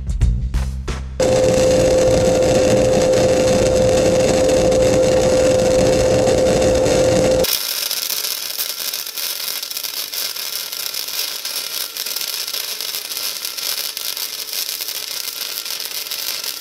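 Intro music ends about a second in, then a flux-core wire-feed welder's arc runs continuously while laying a fillet weld on eighth-inch angle iron. It is at first a loud steady noise with a held hum, and about seven seconds in it changes abruptly to a quieter, hissing crackle.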